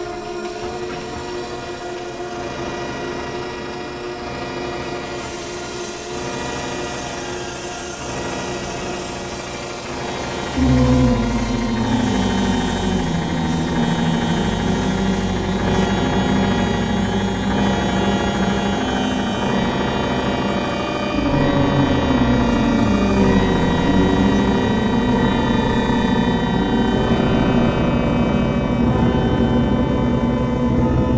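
Live electronic improvised music: layered sustained synthesizer tones. A loud, low, wavering drone enters suddenly about ten seconds in and swells again about two-thirds of the way through.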